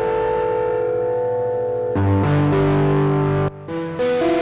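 An instrumental phrase played through the iZotope Trash Lite distortion plugin on its 'Guitar Hero' preset, giving a gritty, guitar-like distorted tone. A held chord rings for about two seconds, then new notes with a bass line come in. The sound drops out briefly just before the end.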